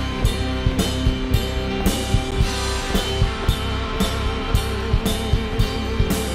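Live rock band playing an instrumental passage with no singing: a drum kit keeps a steady beat of about two hits a second under held electric guitar notes and bass.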